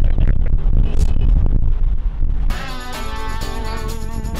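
Low wind and road rumble from riding in an open Polaris Slingshot. About two and a half seconds in, guitar music starts and carries on steadily.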